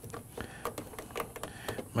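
The red clamp of a NOCO GB20 jump starter being worked onto a car battery's positive terminal: a run of light, irregular clicks as the spring-loaded metal jaws grip and shift on the terminal.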